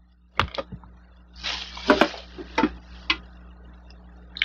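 Thin plastic shopping bag rustling and crinkling as things are pulled out of it, with a few sharp knocks and clicks from the contents; the longest crinkle comes about a second and a half in.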